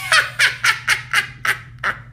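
A high-pitched voice in a quick run of about seven short yelps, about four a second, fading a little toward the end, like a burst of laughter.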